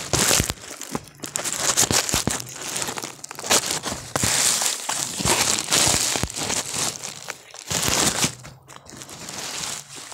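Dry, papery banana leaf sheaths being pulled and torn off a banana trunk by hand, a dense run of crackles, rustles and snaps close to the microphone.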